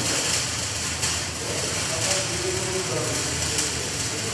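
Gas-shielded (MIG) arc welder crackling and hissing steadily while a bead is laid, with faint voices behind it.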